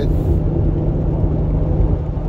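Steady road and engine noise inside a moving car's cabin: a low rumble with a constant hum under it.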